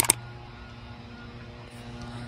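Two sharp clicks right at the start, then a steady low hum.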